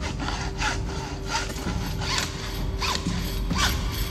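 Hacksaw cutting through a metal tube: about six scraping strokes at an uneven pace.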